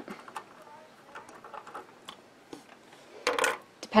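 Scattered faint clicks and taps of hands handling the small metal parts around the needle and presser foot of a Singer 15K treadle sewing machine, with a short louder rustle near the end.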